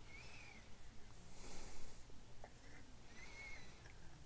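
A man breathing softly through his nose close to the microphone, with a faint whistle on two of the breaths. A few light clicks come from the small metal dial assembly being handled about halfway through.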